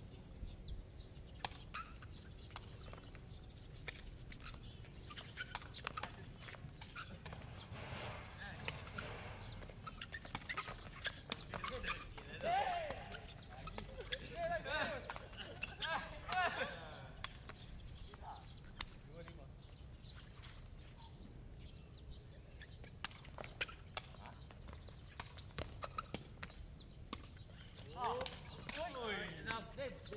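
Irregular sharp knocks of a woven plastic sepak takraw ball being kicked back and forth during a rally. Players call out in the middle and again near the end.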